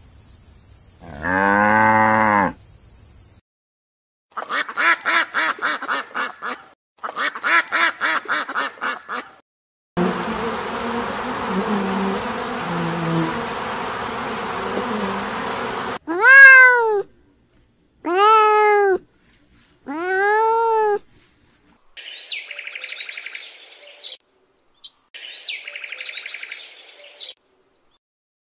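A run of separate animal calls. It opens with a cow's long moo, followed by two bursts of rapid pulsed calls and about six seconds of bee buzzing. Then come four rising-and-falling meows and two short stretches of high chattering near the end.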